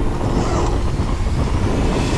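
Wind buffeting the microphone, with sailcloth rustling and flapping as a headsail is gathered by hand on a small sailboat's foredeck.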